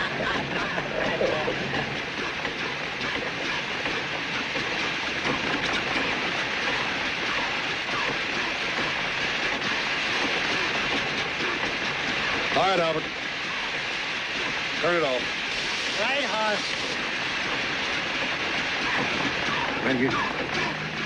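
A homemade mechanical gold-detector contraption running with a steady clattering, hissing noise. It gives a few short sliding, warbling tones in the second half.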